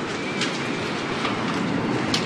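Steady background noise with a faint click about half a second in.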